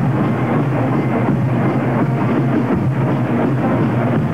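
College marching band playing loudly and steadily, with saxophones, trombones and drums.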